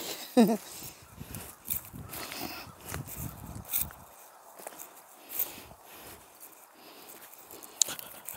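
Irregular footsteps with light rustling and crackling as someone moves along a heap of discarded junk. A short laugh is heard right at the start.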